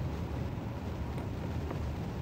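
Pause in talk filled by a steady low rumble of room noise, with a faint tick or two.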